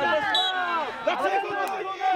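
Several voices shouting over one another on a football pitch during open play, the calls of players and onlookers.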